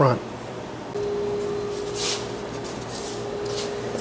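Workshop room tone with a steady hum that comes in about a second in, and a couple of brief rustles.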